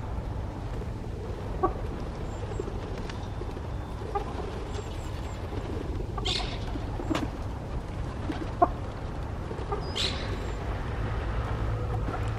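A few short, soft bird calls spaced several seconds apart, with a couple of brief higher rasping notes, over a steady low rumble.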